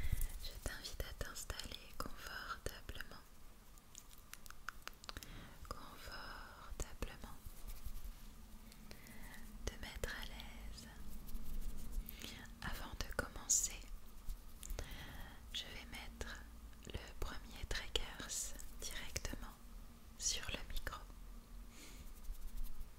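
Soft whispering close to a microphone, in short phrases, with many short clicks between them.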